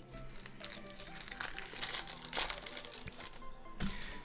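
Foil wrapper of a trading-card pack crinkling as it is handled and opened, with quick, irregular crackles, over faint background music.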